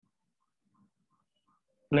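Near silence with faint, scattered scratches of a marker writing on a whiteboard; a man's voice starts right at the end.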